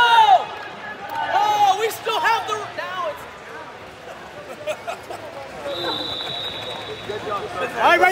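Shouting voices echoing in a large gym, with a loud call right at the start and more shouts in the first three seconds. Near the end a single high steady tone sounds for about a second and a half.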